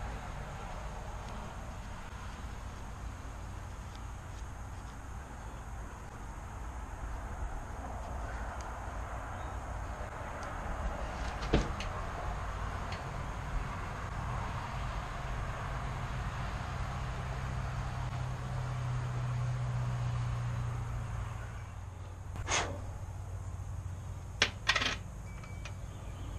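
Steel wool rubbing on a small metal fishing-reel part, with a few light clicks of small parts being handled, about halfway and twice near the end. A low steady hum rises past the middle and fades a few seconds later.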